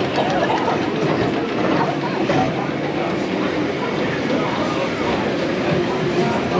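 Gerstlauer Euro-Fighter roller coaster train rolling steadily along its track into the station at the end of the ride, with riders' voices over the running noise.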